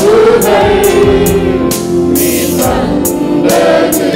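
A congregation singing a Tamil worship song together, a large group of mostly men's voices, over a band accompaniment with a steady cymbal-like beat.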